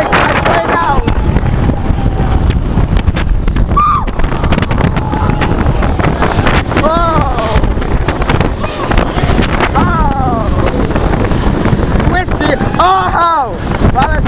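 Wind rushing over the microphone of a roller coaster train at speed, with riders yelling several times, each yell rising and then falling in pitch, the strongest near the end.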